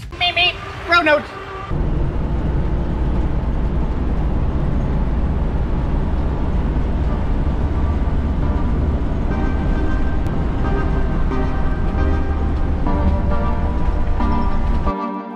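Steady low road and engine rumble heard from inside the cab of a gas Class A motorhome driving at highway speed. Music comes in faintly near the end.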